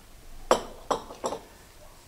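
Tableware clinking on a glass-topped coffee table: a few separate sharp clinks, the first about half a second in.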